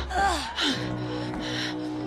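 Film soundtrack: a short, gasp-like falling vocal cry in the first half second, over background score music with held notes.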